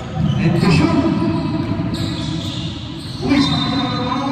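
Indoor basketball game in an echoing gym: players' voices calling out over the ball on the hardwood court, with a louder burst of sound just after the start and another about three seconds in.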